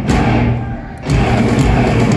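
Thrash metal band playing live through a club PA: distorted electric guitars, bass and drums. The sound drops away into a fading chord for a moment, then the full band comes back in loud about a second in.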